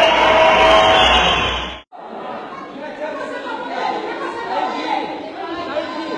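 Crowd in a large hall: loud, dense crowd noise that cuts off abruptly just under two seconds in, followed by a quieter murmur of many voices talking.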